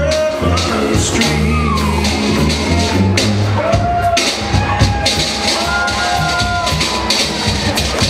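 Traditional New Orleans jazz band playing live: a sousaphone bass line under horns and a drum kit.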